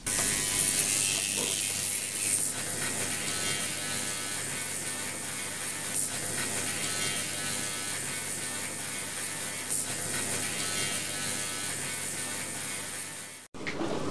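Ultrasonic cleaning bath running a cleaning cycle: a steady high-pitched hiss with a buzz, which cuts off suddenly near the end.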